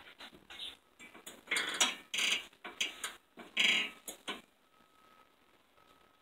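Pet budgerigars (parakeets) chattering in quick, irregular bursts of harsh chirps, loudest in the first four seconds and then falling away. A faint, thin, steady tone comes and goes near the end.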